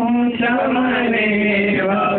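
A man chanting a devotional song in long, drawn-out held notes; the pitch steps down about halfway through and shifts again near the end.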